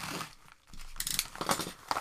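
A paper mailer envelope being torn open and crinkled by hand: several short rips and rustles, the loudest about a second and a half in.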